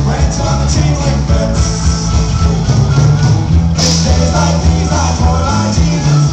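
Live rock band playing: a man singing over guitars, a heavy bass line and drums, with a cymbal crash about four seconds in.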